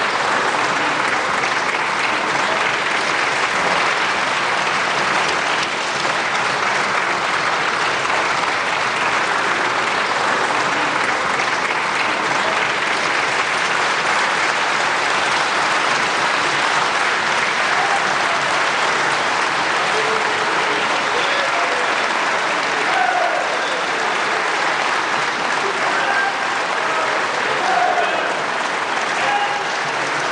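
Sustained applause from a large crowd of people clapping, steady throughout, with scattered voices calling out over it in the second half.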